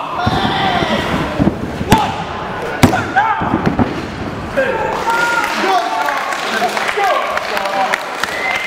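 Spectators shouting and calling out over a wrestling match, with sharp slaps and thuds of wrestlers' strikes and bodies on the ring canvas; the two loudest impacts come about two and three seconds in.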